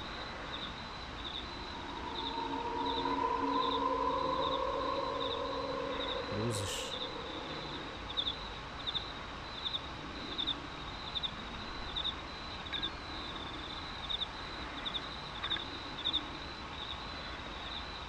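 Night-time outdoor field recording: insects chirp in a steady rhythm, about two high chirps a second, over a hiss of background noise. A strange low droning tone with several pitches swells up about two seconds in and fades out by about six seconds; it is the strange sound coming from the monument.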